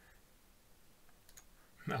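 Quiet room tone with two faint clicks close together about a second and a half in; a man's voice begins right at the end.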